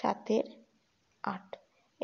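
Speech only: a few short, soft spoken words with pauses between them.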